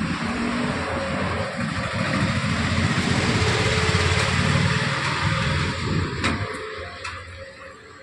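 Wire shopping trolley being pushed across a tiled shop floor, its wheels and basket rattling; the rattle grows louder towards the middle and dies away near the end.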